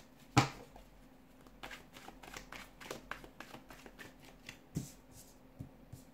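Tarot cards being handled and dealt onto a table: a sharp snap about half a second in, then a run of light flicks and taps of card against card and card on the table, with a heavier one near the end.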